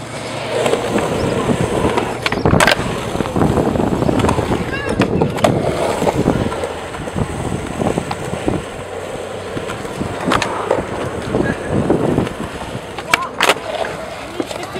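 Skateboard wheels rolling on the concrete of a skatepark bowl in a steady rumble, with a few sharp clacks of the board: one about three seconds in and two close together near the end.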